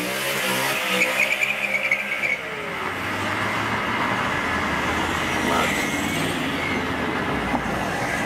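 A car driving: an engine note that rises and falls over the first two seconds or so, then steady engine and road noise.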